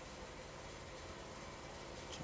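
Steady, faint background hiss with a thin hum: the open microphone's room noise, with no distinct sounds.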